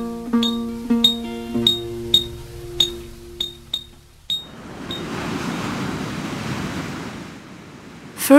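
Plucked-guitar background music with a regular tick, cutting off about halfway, then the rushing noise of ocean surf breaking, fading out near the end.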